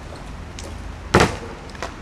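BMX bike landing a drop from a garage roof onto paving: one loud, sharp impact about a second in, followed by a smaller knock.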